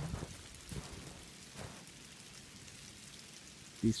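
Footsteps crunching in deep snow: three steps in the first two seconds, then only a steady hiss.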